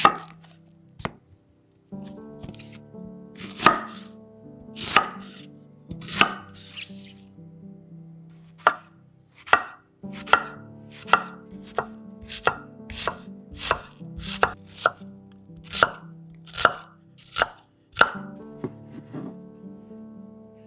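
Kitchen knife chopping an onion on a wooden cutting board: sharp knocks of the blade striking the board. The knocks come a few seconds apart at first, then settle into a quicker run of one to two a second.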